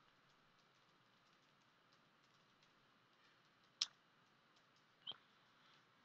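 Faint computer keyboard typing: a string of soft key ticks, with two sharper clicks about four and five seconds in.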